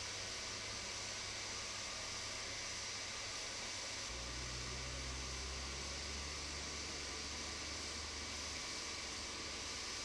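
Steady, even hiss with a faint low rumble underneath that grows a little stronger from about four seconds in until near the end.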